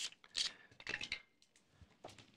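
Handling noise of a wine-preserver device being clamped onto the neck of a wine bottle: a click, then short scraping and rubbing sounds about half a second in, and a cluster of clicks and rubs around a second in.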